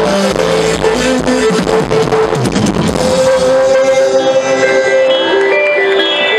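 Live pop band playing loudly through a concert sound system. About three seconds in, the bass and drums drop away, leaving held keyboard notes.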